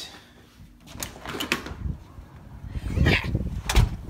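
A house door being opened by its knob: sharp clicks of the knob and latch, then louder bumps and rustling near the end.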